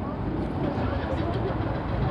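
Steady street-traffic rumble, with a motor vehicle's engine running at idle.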